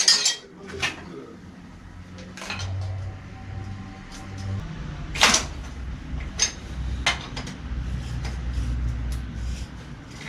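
Metal tools clinking and knocking at a bicycle's crank as a tool is fitted to unscrew it, with scattered sharp clanks, the loudest about five seconds in, over a low rumble.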